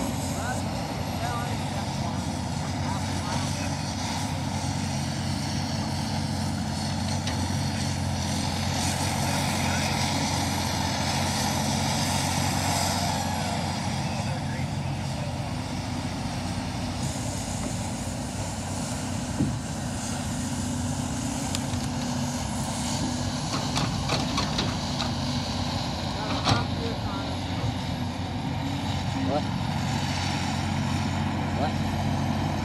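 Caterpillar 568 tracked log loader running steadily as it works its boom and grapple, with a few short sharp knocks of logs being handled from about two-thirds of the way through.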